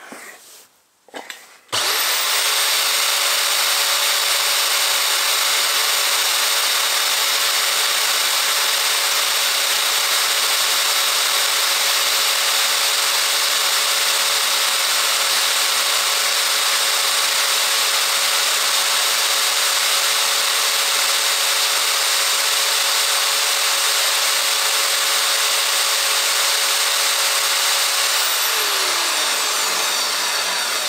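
A Scheppach bench bandsaw starts about two seconds in and runs steadily while cutting a small metal block in two. Near the end it is switched off and winds down with a falling whine.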